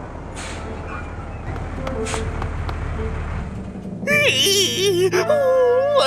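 A low cartoon vehicle rumble that builds for about four seconds, with two short hisses. About four seconds in, a loud, wobbling, wavering voice-like wail comes in over a steady low music bed.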